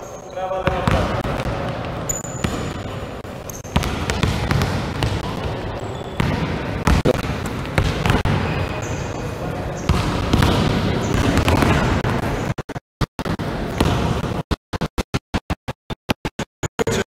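Several basketballs being dribbled at once on a gym floor: many overlapping, irregular bounces. Near the end the sound cuts in and out repeatedly.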